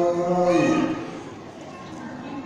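A man's voice chanting into a microphone, holding one long, steady low note that fades out about a second in.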